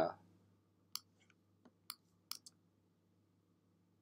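Four faint computer mouse clicks, the last two in quick succession, over a low steady hum.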